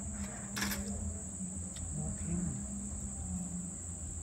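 Steady high-pitched chorus of night insects, with a low hum beneath it and a brief knock about half a second in.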